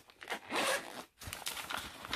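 Zipper on a small pouch being pulled open in two runs, with a short pause about a second in.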